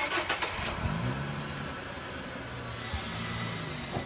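Sound effect of a car engine starting with a sudden burst, then revving up and settling into a steady run, with another rev near the end.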